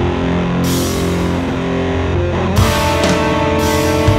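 A rock band playing live: distorted electric guitars and bass hold heavy sustained chords over drums. Cymbal crashes come about half a second in and again about two and a half seconds in, where a higher held guitar line comes in.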